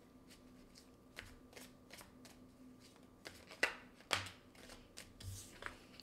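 Oracle cards being shuffled by hand: faint, scattered papery card clicks, with two louder snaps about three and a half and four seconds in.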